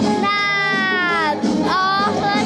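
A young girl singing into a handheld microphone, holding one long note that slides down at its end, then starting a new note near the end.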